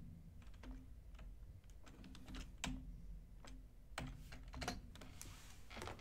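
Light, irregular typing on a computer keyboard: scattered key clicks, a few slightly louder than the rest.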